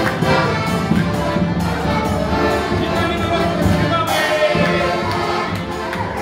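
Accordion playing a folk tune with a small band, while people at the table clap along.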